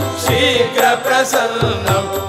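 Devotional Shiva bhajan: a male voice chanting seed syllables such as "vam" and "sham" in a repeated chant. Behind it run a steady low drone and recurring hand-drum strokes.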